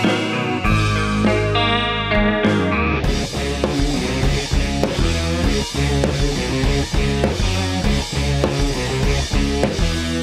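Overdriven electric guitar playing a lead solo on a Les Paul-style humbucker guitar's neck pickup. It runs through a Marshall Silver Jubilee amp plugin with the mids turned fully up and a light slapback delay of about 300 ms. Sustained bass notes sit beneath the guitar, and the sound fills out with a busier accompaniment about three seconds in.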